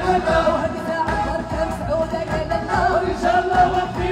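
Live Moroccan chaabi music: a woman singing through a microphone over hand-beaten frame drums.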